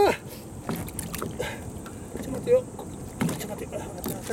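Water slopping against a boat's hull, with scattered small knocks and handling noises as a hooked fish is held alongside. One brief, louder sound about two and a half seconds in.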